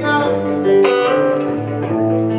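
Acoustic guitar played live, strummed chords ringing on, with one sharp strum about a second in.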